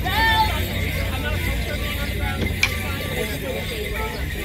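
Fiddle playing a Morris dance tune for the dancers, mixed with spectators' chatter and a steady low rumble of wind on the microphone. A single sharp clack sounds about two and a half seconds in.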